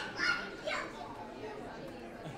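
A roomful of people chatting and greeting one another, many voices overlapping, with a few high-pitched children's voices standing out in the first second.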